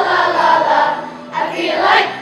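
Elementary school children's choir singing a holiday song together, a sustained sung phrase with a new note swelling up near the end.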